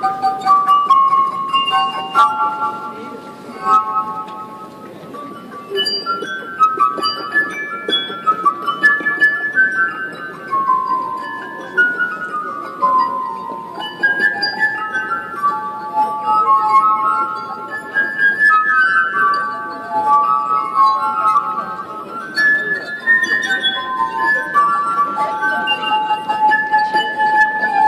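Glass harp: the wet rims of water-tuned wine glasses rubbed with the fingertips, ringing in sustained, overlapping notes of a melody. About halfway through there is a run of notes stepping downward, and the playing drops quieter for a moment a few seconds in.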